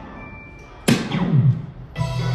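An electronic sound effect about a second in: a sudden loud hit followed by a falling pitch sweep that dies away within about half a second, over faint background music.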